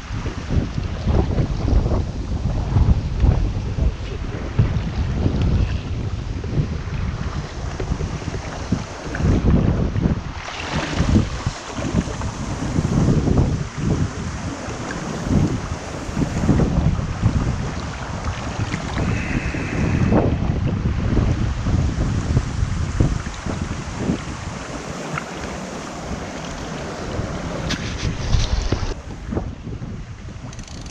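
Wind buffeting the microphone in uneven gusts over the steady rush of a shallow, fast river running over stones.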